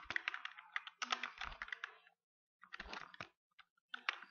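Computer keyboard typing: a quick run of keystrokes for about two seconds, a brief pause, then a few more keystrokes.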